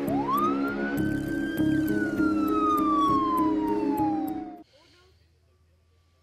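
Siren sound effect in a TV intro theme: one wail rising quickly, then falling slowly, over held music chords. It cuts off suddenly about four and a half seconds in.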